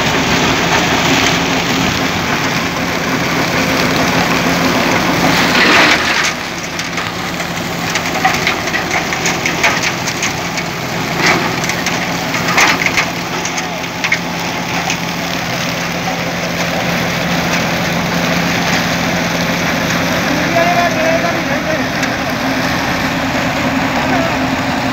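John Deere 5310 diesel tractor engine running steadily under load, pulling a Happy Seeder through loose paddy straw, with crunching and crackling from the straw being worked. The crackles bunch up about five seconds in and again over several seconds in the middle.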